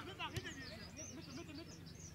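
Footballers' shouted calls across the pitch, heard from a distance, with a single sharp thud about half a second in.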